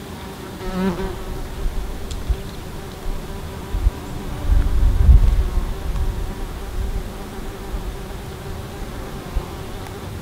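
A flying insect buzzing close to the microphone, a steady drone that wavers and swells as it passes near, about a second in. A low rumble on the microphone is loudest about five seconds in.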